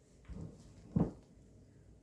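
Silicone spatula folding thick whipped-cream and cream-cheese filling in a glass bowl: quiet and soft, with a short knock about a second in.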